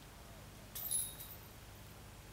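Disc golf basket chains jingling briefly, about a second in, as a short putt is tapped in.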